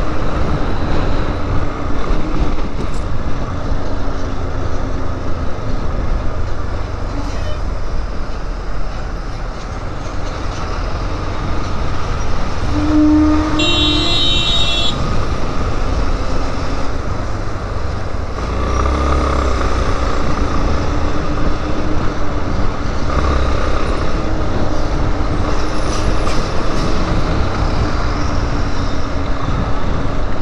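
Motorcycle engine running under way in traffic, heard from a helmet-mounted camera with wind and road noise. Around the middle, a vehicle horn sounds once for about a second.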